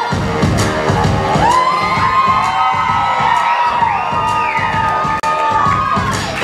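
Song with a singing voice over a heavy beat that drops in right at the start, with an audience cheering and whooping over the music.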